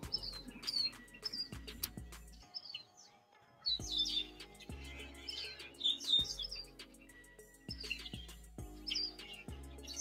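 Birds chirping in short, scattered calls over faint background music of low held notes. The sound cuts out completely twice, for about a second each time.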